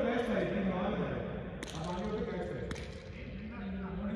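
Men talking, with two sharp knocks, one about one and a half seconds in and one nearly three seconds in.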